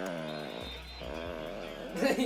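A person's voice singing one long, wavering note, steady at first and then wobbling in pitch.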